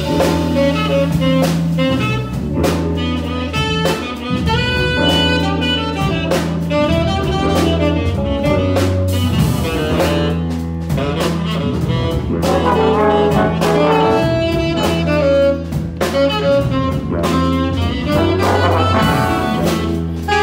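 Live big-band jazz: a saxophone solo over the band's accompaniment, with a drum kit keeping time.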